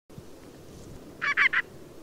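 Ruff (Calidris pugnax) giving three short calls in quick succession about a second in: its call while feeding.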